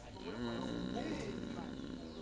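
A wavering, voice-like call lasting about a second, with faint steady high tones behind it.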